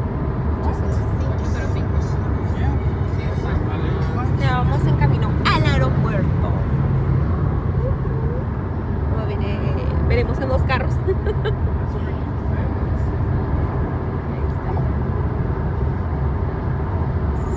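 Steady low road and engine rumble inside a moving car's cabin at freeway speed. A high-pitched voice sounds over it a few seconds in and again around ten seconds.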